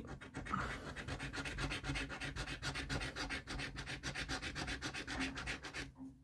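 A coin scratching the scratch-off coating from a scratchcard's play area in quick, even back-and-forth strokes, about six a second, stopping just before the end.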